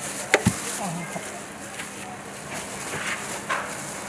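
Street-stall background of indistinct voices and general noise, with two sharp knocks in quick succession just after the start.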